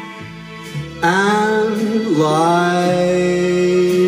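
A man singing a slow ballad over a soft, steady instrumental backing, his voice coming in about a second in with two long held notes.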